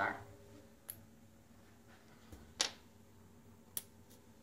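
Three short, light clicks as small magnets are handled, the loudest about two and a half seconds in.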